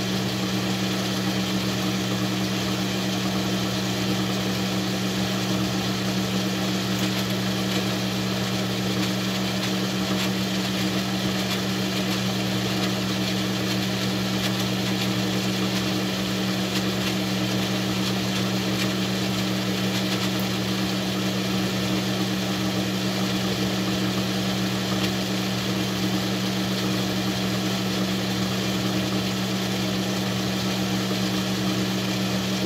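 Metal lathe running with a steady, even hum from its motor and drive, turning down a small workpiece as the carriage advances under power feed. It runs smooth and consistent, with no change in pitch.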